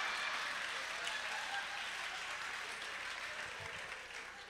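Audience applauding after a punchline, slowly fading away.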